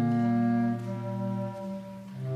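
Bass clarinet trio playing sustained low chords. About three-quarters of a second in, the top note stops and the chord gets softer, then it fades further near the end.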